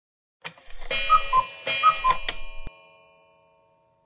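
Cartoon clock sound effect marking a time skip: clicking and ringing tones begin about half a second in, with a falling two-note call heard twice. A sharp stroke follows, then the tones ring out and fade.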